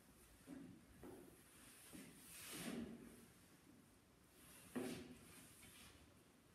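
Faint scuffs and slides of dance shoes on a wooden parquet floor as a couple moves through slow tango steps, with one longer brushing slide a couple of seconds in and a sharper scuff near the end.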